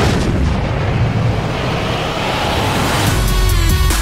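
Movie crash sound effects of a sports car smashing through a building amid flying debris: a long, noisy crash that slowly eases. About three seconds in, a deep boom and a trailer music hit with steady tones and fast ticking take over.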